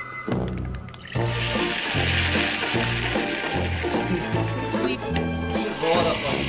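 A Juicero juice pack squeezed by hand, juice squirting and splashing into a glass as a steady hiss from about a second in, over bouncy background music with a stepping bass line.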